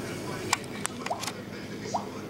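Faint handling noise: a few light clicks and a couple of brief rising squeaks as the camera is moved about close to a container, over low room noise.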